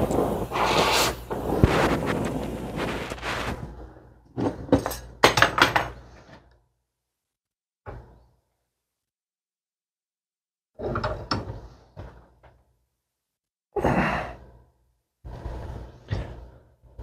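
Oxy-acetylene torch flame running loudly for the first few seconds as it heats a steel brake-pedal arm clamped in a vise, then short scattered clunks and knocks in separate bursts as the hot steel is worked and bent.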